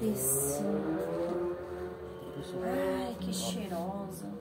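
A woman's voice speaking, over a low steady hum.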